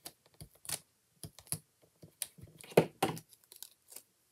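Small clicks, taps and paper rustles of hand crafting work: handling a paper die-cut, scissors and dimensional foam adhesive squares on a table, with the loudest click about three seconds in.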